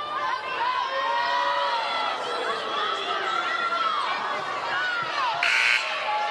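Basketball arena crowd noise, many voices shouting and calling over one another while play is stopped. A short scorer's-table horn blast sounds about five seconds in, as a substitution is made.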